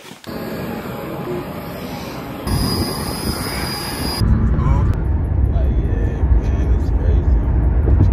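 Steady noise for about two and a half seconds, then a regional jet's engines running on an airport apron, with a high steady whine. From about four seconds in, this gives way to the low rumble of a car's cabin on the move.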